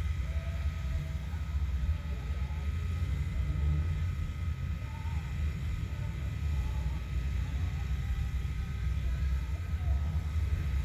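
Low, steady rumble of a vehicle engine idling, heard from inside the cabin.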